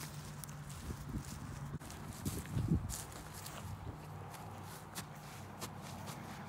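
Faint footsteps walking over dry pasture grass.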